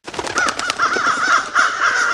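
Sound effect of crows cawing: a rapid run of harsh caws, several overlapping, starting abruptly.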